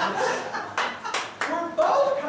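A few sharp hand claps, three in quick succession about a second in, amid the performers' talk.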